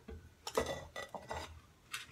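Utensils clinking and scraping against a bowl as food is scooped up, a few short knocks in quick succession.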